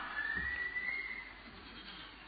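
A pause in a man's speech: faint hiss of the recording that fades lower, with a thin faint tone gliding slightly upward during the first second.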